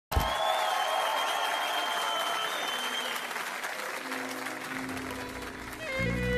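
Studio audience applauding and cheering, with a long high held tone over it in the first half. The applause fades, and sustained low notes from the show's band come in about four seconds in.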